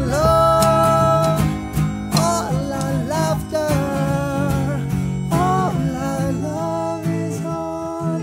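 A small acoustic band playing live: a strummed acoustic guitar, a melodica with long held notes, and a hand-played drum.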